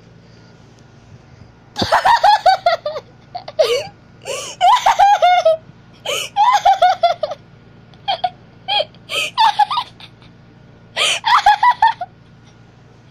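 A person laughing hard in several high-pitched bursts of rapid 'ha-ha' pulses, with short breaks between them.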